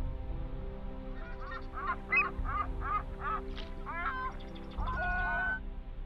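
Outro background music under a run of about seven short honk-like calls, each falling in pitch, followed by one longer call near the end.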